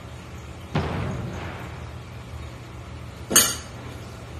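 Fork scraping and clinking in a bowl as powdered flavouring is mixed into cooked macaroni: a sudden scrape a little under a second in that fades away, and a short sharp noise just past three seconds, the loudest sound.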